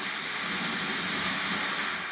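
Fog generator blowing out fog with a steady rushing hiss that fades near the end.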